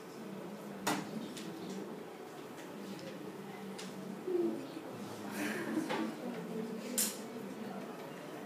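Small paper strips being handled on a desk: light rustling, with two sharp clicks, one about a second in and one near the end.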